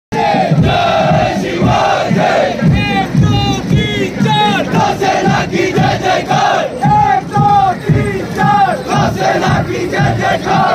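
A large crowd of many voices shouting and calling out together, loud and continuous.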